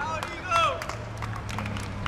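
Scattered hand clapping from a small group of spectators, irregular and light, with a brief voice calling out about half a second in.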